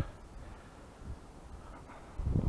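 Quiet outdoor background noise, a faint even hiss with no distinct event.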